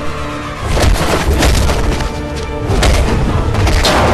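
Action-film fight soundtrack: a dramatic musical score over deep rumble, cut through by several heavy booming impact hits spread across the four seconds.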